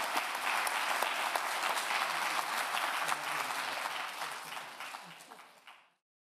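Audience applauding, with many individual claps. The applause fades over the last two seconds and cuts off just before the end, with a few faint voices underneath.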